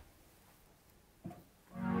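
Roland Juno-106 polysynth playing a warm string-pad chord. It swells in quickly near the end, after a near-silent pause, and holds as many sustained pitches together.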